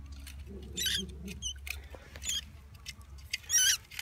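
A mouse caught in a serrated steel-jaw trap squeaking three times in high, wavering cries, the last one loudest near the end, with faint scattered clicks between them.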